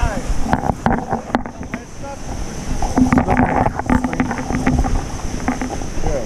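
Handling noise from a jostled action camera: repeated knocks and rubbing on the body and microphone as it is swung and turned over, over a steady rush of wind and falling water.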